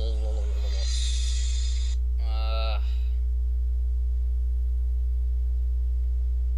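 Steady low electrical hum, mains hum on the recording, that runs throughout with faint steady tones above it. In the first three seconds a voice is briefly heard twice, with a short hiss between.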